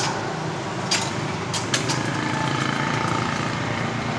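A small engine running steadily in the background, with a few sharp clicks about a second in and again shortly after.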